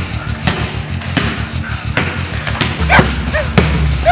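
A German Shepherd barking repeatedly, over background music with a steady low beat.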